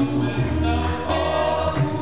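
Male a cappella vocal ensemble singing in close harmony into handheld microphones, with held chords over a low bass voice.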